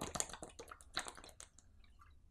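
Someone drinking in gulps from a plastic bottle: a quick run of wet swallowing clicks and crackles of the bottle, dying away about a second and a half in.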